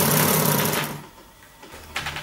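Hand-cranked model alternator running: its drive wheel, turned by hand, spins the coil between the magnets with a steady mechanical whirr that stops about a second in. A short knock near the end.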